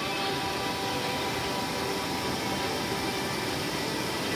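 Mountain stream rushing over boulders in a small whitewater cascade: a steady, even wash of water noise.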